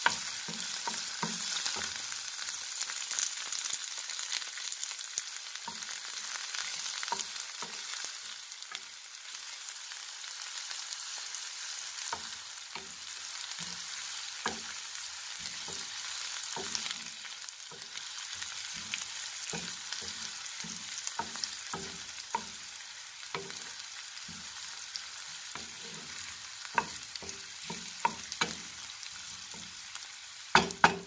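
Chopped onions, curry leaves and green chillies sizzling in hot oil in a pan, with a steady hiss. A spatula stirs them now and then, giving short scrapes and taps against the pan.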